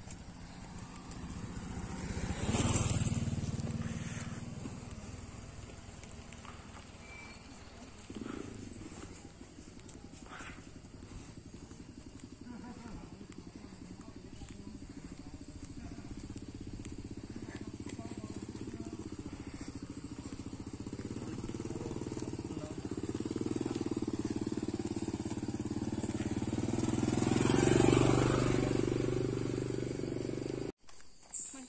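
Motorcycle engines: one passes loudly about two to three seconds in. Then another engine runs steadily, growing slowly louder to a peak near the end before fading.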